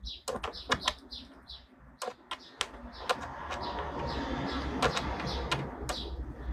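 A small bird chirping repeatedly, short high chirps about three a second, with scattered sharp clicks in between.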